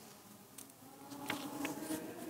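A low, steady hum in a quiet room, with a few short ticks in the second half, like small handling noises at a lectern microphone.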